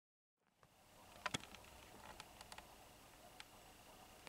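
Near silence: the sound cuts in about half a second in as faint room tone, with a few light clicks, the loudest pair a little over a second in.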